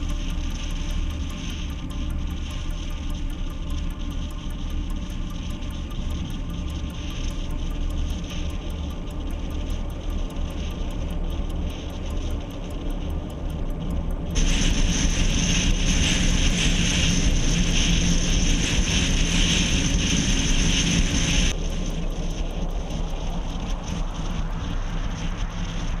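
Road and wind noise from a car driving along at speed, a steady low rumble under a hiss. About halfway through, a much louder hiss cuts in suddenly and drops away just as suddenly some seven seconds later. A faint rising whine comes in near the end.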